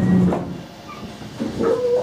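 A train's running hum dies away about half a second in as it slows at a station platform, then short high squeals, most likely from the brakes, with the loudest near the end.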